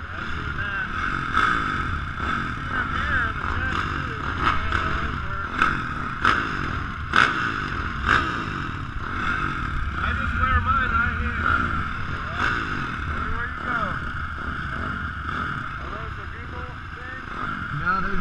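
Several dirt-bike engines running together on a motocross start line, idling with pitch rising and falling now and then as throttles are blipped, with voices talking around them.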